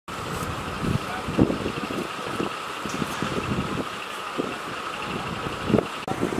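An engine running steadily with a constant hum, with scattered short knocks and clunks, the loudest about a second and a half in and just before the end.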